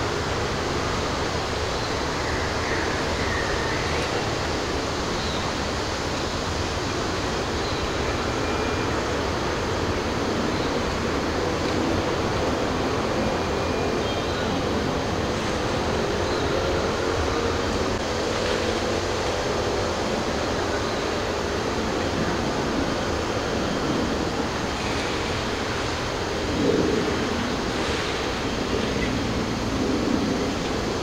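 A steady rushing noise, with a few faint short high chirps and a brief louder sound near the end.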